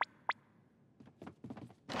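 Cartoon sound effects: two quick downward zips about a third of a second apart and a few faint clicks, then a loud whoosh for the scene transition near the end.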